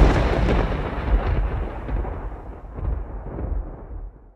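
A deep rumbling tail, like rolling thunder, fades away over about four seconds after the theme song's final low hit, swelling faintly a few times as it dies out.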